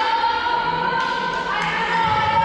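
Several voices singing together in long held notes, the pitch stepping up about halfway through.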